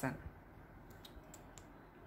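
A few faint, small clicks against quiet room tone, about a second in.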